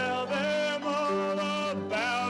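A man singing a hymn in long held notes with vibrato, accompanied by grand piano and upright double bass.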